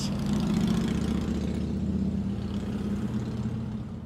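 A steady, low engine hum, such as a motor vehicle idling.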